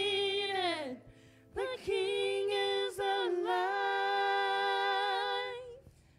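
A woman singing into a microphone. A phrase ends on a falling note about a second in, and after a short pause she sings one long held note that fades out near the end.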